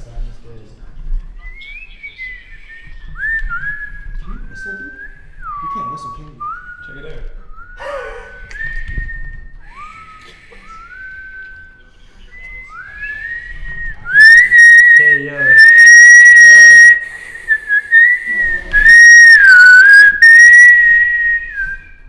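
A person whistling with the lips. First comes a run of short, fairly quiet notes sliding up and down. From about two-thirds of the way in it becomes a loud, long-held high note that wavers and dips once, and it stops just before the end.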